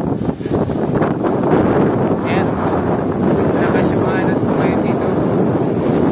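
Rough, choppy waves breaking and washing against a concrete seawall, with strong wind buffeting the microphone.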